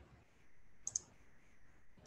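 Computer mouse clicked twice in quick succession about a second in, faint against quiet room tone.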